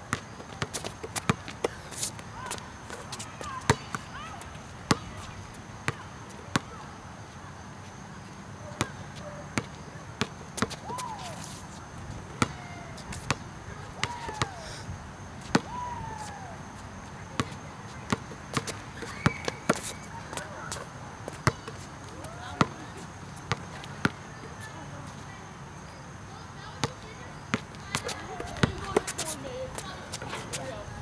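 Basketball bouncing on an outdoor asphalt court during dribbling and layups: sharp, irregular bangs, often a second or so apart, with short sliding chirps between them.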